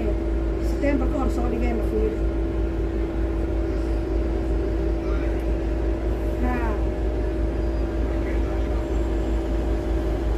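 Inside a double-decker bus: a steady low engine rumble with a constant hum. Passengers' voices talk briefly in the first two seconds and again around six seconds in.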